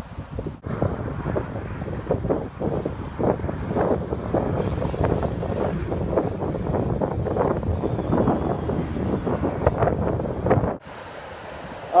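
Wind buffeting the phone's microphone in gusts, over the wash of small surf breaking on the beach. The buffeting drops away abruptly near the end, leaving a quieter steady hiss.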